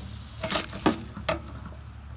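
Three sharp clicks about 0.4 s apart as a hand tool works at the metal fittings of a travel trailer's water heater to open it for draining, over a steady low hum.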